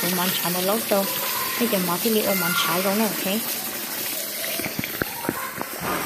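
Tap water pouring steadily into a plastic basin of rice while a hand swishes through the soaking grains, with a few light knocks about five seconds in.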